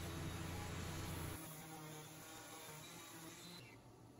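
Faint, steady buzz of a Craftsman random-orbit sander rough-sanding the edge of a wooden guitar body. The buzz drops lower about a second and a half in.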